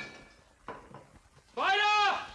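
A cat meows once near the end, a single drawn-out call that rises and then falls in pitch. A short soft knock comes just under a second in.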